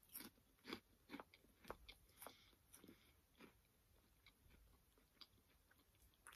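Faint crunching and chewing of a chocolate-covered crisp, irregular soft crunches that come a couple of times a second at first and thin out toward the end.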